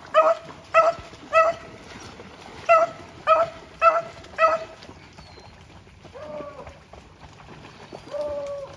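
Rabbit-hunting hound barking in the swamp: seven short, same-pitched barks in two runs, three and then four, then a fainter, drawn-out call after a pause.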